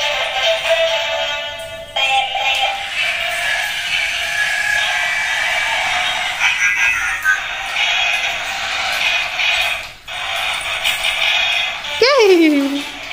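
Remote-control transforming car-robot toy playing tinny electronic music and sound effects through its small speaker, with short breaks about two and ten seconds in.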